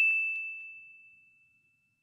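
A single high, bell-like 'ding' sound effect, added in editing, that rings out and fades away over about a second and a half.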